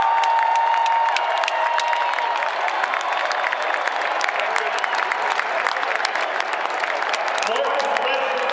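Applause from many people: dense, quick hand claps over a crowd, with voices mixed in.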